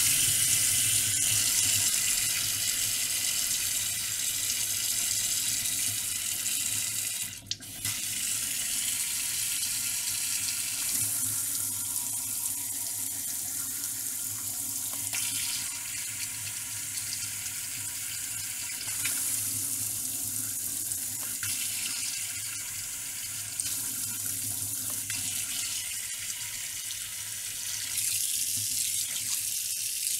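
Water running from a Belanger pull-down kitchen faucet into a stainless steel sink as a steady splashing hiss. It cuts out briefly about a quarter of the way in, then shifts in level a few times as the spray head is moved.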